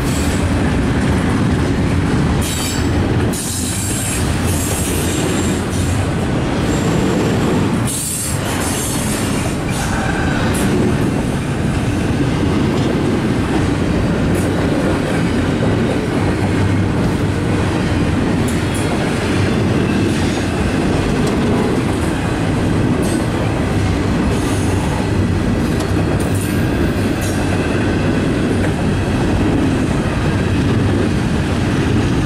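Double-stack intermodal container train rolling past: a steady loud rumble and clatter of freight-car wheels on the rails. Brief high-pitched wheel squeals come in a few seconds in and again around eight seconds in.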